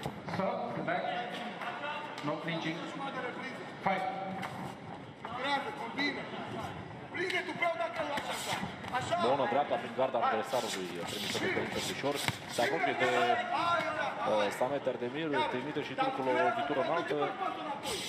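Indistinct men's voices calling out across a large hall, with occasional sharp smacks of kickboxing strikes landing.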